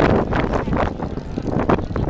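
Steady low rumble of a passenger ferry's engines, with gusty wind buffeting the microphone in uneven rushes.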